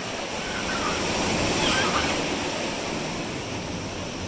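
Ocean surf washing in around rocks: a steady rush of water that swells to its loudest about two seconds in.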